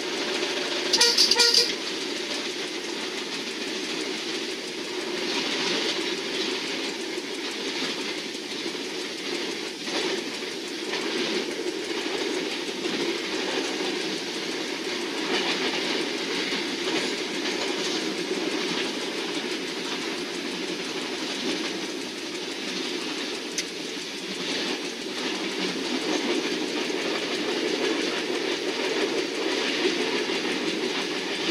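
Passenger train running along the track, heard from inside the driver's cab: a steady rumble with occasional knocks from the rails. The horn gives one short blast about a second in.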